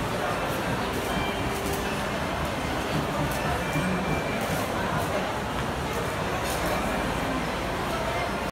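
Shopping-mall ambience: indistinct voices of shoppers with background music, holding a steady level.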